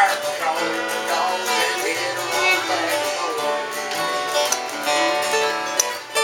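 Acoustic guitars strumming chords while a fiddle plays a sliding melody line over them, an instrumental passage between sung verses.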